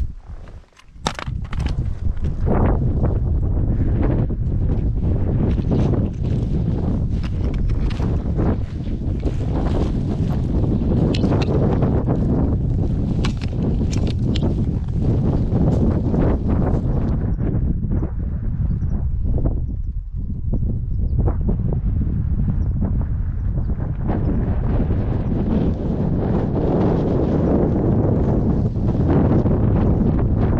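Wind buffeting the microphone in a steady low rumble, with a hiker's footsteps on the trail, most distinct in the first half.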